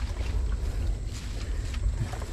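Low, uneven rumble of wind on the microphone, with faint rustling and ticks from dry grass and leaves as a wire-mesh fish trap is handled.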